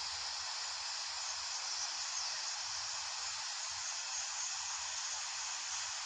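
Steady, even hiss like static, with no low end, playing back from a phone video-editor's preview of a project.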